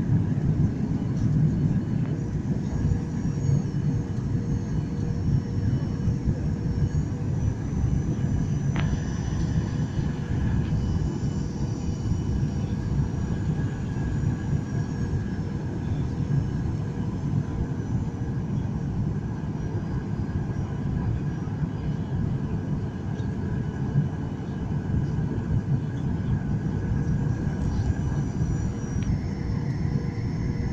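Jet airliner cabin noise in flight: the steady rumble of turbofan engines and airflow heard from inside the cabin, with a few faint steady whining tones above it.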